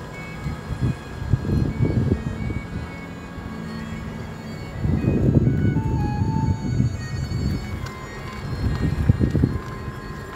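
Uneven low rumble, louder from about five seconds in, with faint chiming music above it.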